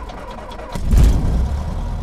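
A vehicle engine running with a deep rumble, swelling louder about three-quarters of a second in.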